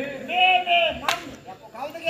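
A short high-pitched voice, then a single sharp crack about a second in.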